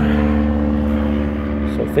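Garrett AT Pro metal detector sounding a steady target tone with several overtones as the coil passes over a buried target whose ID bounces around the low 50s, the mid-conductor range where nickels and pull tabs read.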